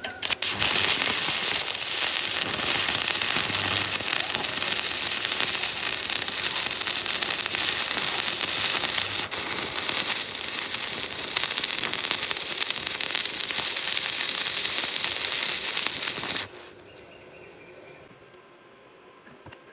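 Stick (shielded metal arc) welding with an E6013 electrode on steel rebar: the arc sizzles steadily, with a brief dip about nine seconds in, then cuts off suddenly as the arc is broken near the end.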